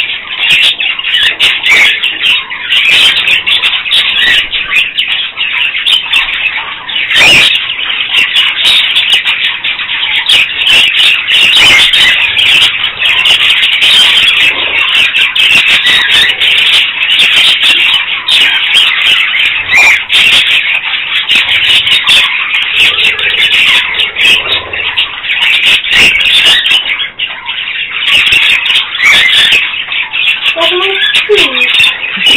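A flock of budgerigars chattering and chirping without pause, a loud, dense mass of calls.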